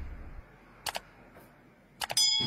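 Faint background hiss dying away, then two short sharp clicks close together about a second in.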